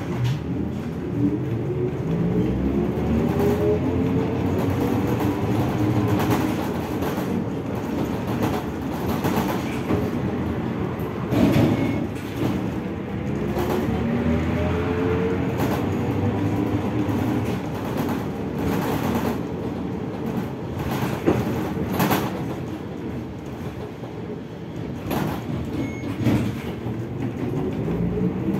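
ZiU-682G trolleybus heard from inside the cabin while moving: the traction motor's whine rises in pitch as it speeds up and falls as it slows, twice over, rising again near the end. Body rattle runs throughout, with a few sharp knocks.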